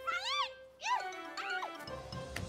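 Three short, high cries, each rising and then falling in pitch, over background music.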